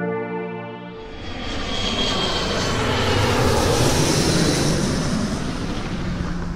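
Airplane flyby sound effect: a rush of engine noise with a faint high whine that swells from about a second in, peaks in the middle and eases off near the end. Sustained ambient synth tones play in the first second and stop as the noise comes in.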